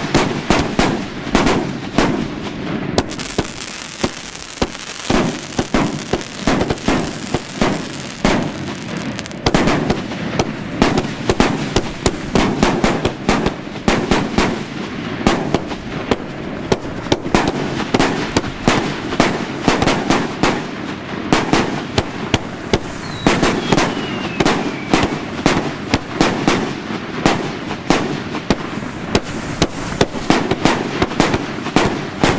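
A 100-shot Polish firework battery, the El Titanio, firing without a break. Shots and bursts follow one another several times a second, and the loudness pulses with each one.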